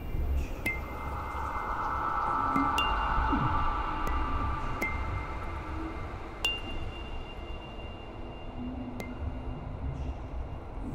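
Sparse chime-like strikes, about five in all, each ringing on at a high pitch. They sound over a sustained mid-pitched hum that swells and then eases about halfway through, and a steady low rumble. This is the electroacoustic score of a performance piece.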